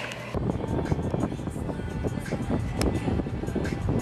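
Car driving, with road and engine noise heard inside the cabin and music playing over it. It starts abruptly a moment in.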